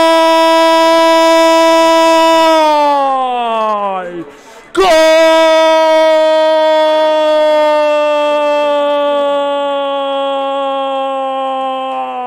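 A football commentator's drawn-out goal cry, '¡Gooool!', shouted as one long high note. It falls in pitch about three seconds in and breaks for a quick breath around four seconds. A second long held note then slowly sinks in pitch.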